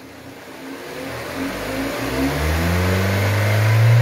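Kia Sportage's four-cylinder engine revved up from idle, its pitch and loudness climbing steadily to a peak near the end. The engine runs smoothly now that a new ignition coil has cured the misfire on cylinder 4.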